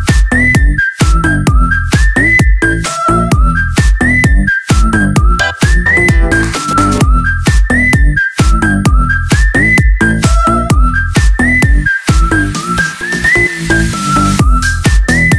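Instrumental House Lak remix dance music: a heavy bass-and-kick beat under a high lead melody that repeats a short rising phrase about every two seconds, with no vocals.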